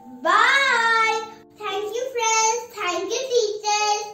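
A song: a high, child-like voice sings three short phrases over held instrumental notes, with brief breaks between the phrases.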